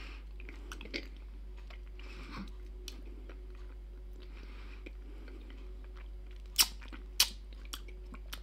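A person chewing hard salty salmiak liquorice wheels with the mouth closed, giving soft, wet chewing sounds over a steady low hum. Near the end come two sharp mouth clicks about half a second apart.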